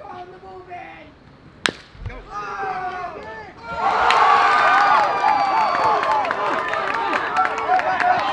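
A single sharp crack of a bat meeting a pitched baseball about a second and a half in. From about four seconds in, spectators shout and cheer loudly for a run-scoring hit.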